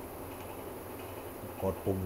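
Faint steady low hum with hiss in the room, and a man's voice briefly near the end.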